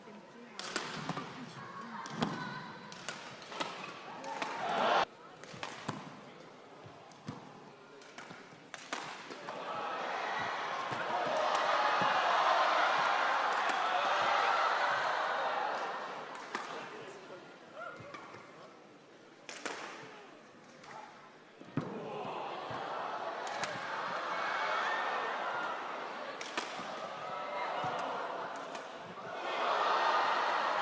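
Badminton rally: sharp knocks of rackets hitting the shuttlecock, the loudest about five seconds in. Twice, a crowd in a large arena cheers and applauds after a point, for several seconds each time.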